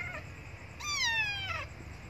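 Young tabby kitten meowing: one high cry about a second in that falls in pitch, after the end of a previous cry at the very start.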